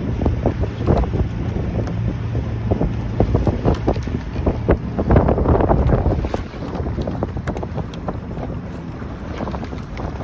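Wind buffeting the microphone on a moving motorboat, over the boat's steady low engine hum and irregular splashing water. The hum is stronger in the first half.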